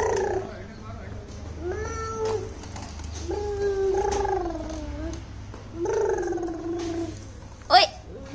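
A baby crying in drawn-out wails, four of them, each about a second long, some sliding down in pitch at the end. Near the end there is a very brief, sharp sweep that rises and falls in pitch.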